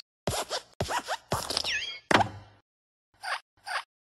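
Cartoon sound effects for an animated hopping desk lamp: a run of short springy sounds with quick rising and falling pitch glides, then a hard thump about two seconds in as it lands on the letter, and two short taps near the end.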